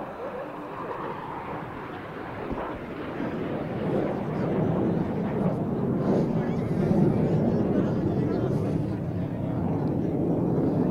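Jet engines of the Surya Kiran team's BAE Hawk trainers passing overhead in a nine-ship formation: a rushing jet noise that swells over the first few seconds and is loudest about seven seconds in.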